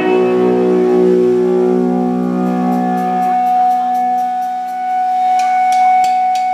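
Electric guitar holding a steady, sustained drone of layered notes, with one higher note coming to the fore about halfway through. A light, quick ticking of about four or five a second joins about two seconds in.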